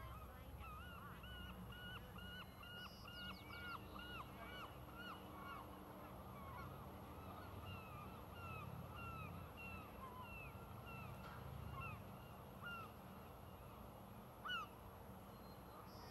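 A bird calling over and over: a quick run of short calls that rise and fall in pitch, about two a second at first, then slowing and thinning out, with one louder single call near the end.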